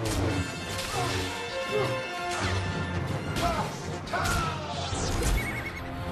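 Film score music under fight-scene sound effects: repeated hits and crashes, with several short sliding pitched sounds over the music.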